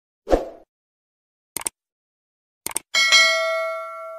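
Subscribe-button animation sound effects: a brief swoosh, a mouse click about a second and a half in, a quick double click, then a notification bell ding that rings on and fades away.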